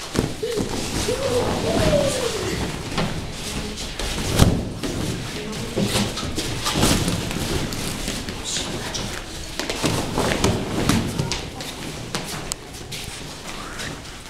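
Children sliding down a padded foam gym wedge and landing on the mats with dull thuds, among children's excited voices and shouts. The loudest thud comes about four and a half seconds in.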